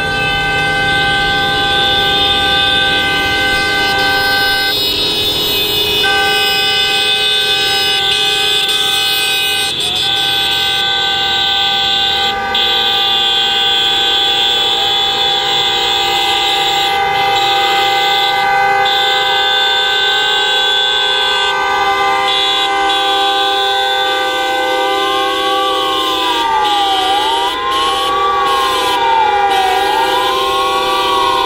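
Many taxi car horns held down together in a continuous blare of several pitches at once, from a slow-moving taxi procession. From about two-thirds of the way through, a siren joins in, slowly rising and falling.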